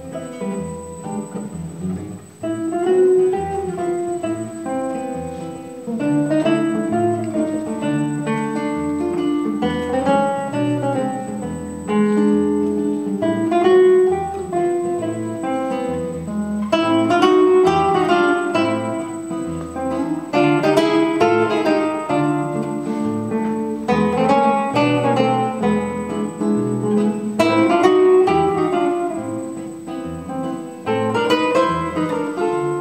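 Two classical guitars playing a duet: plucked melodic phrases that rise and fall over a moving bass line, with a brief dip about two seconds in before the playing fills out again.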